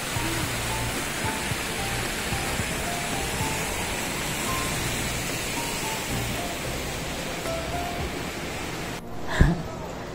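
Steady rushing splash of an indoor fountain, with faint music underneath. The water sound cuts off sharply about nine seconds in, and a single thump follows.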